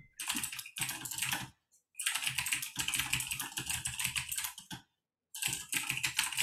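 Typing on a computer keyboard: fast runs of key clicks in three bursts, broken by short pauses about a second and a half in and just before five seconds in.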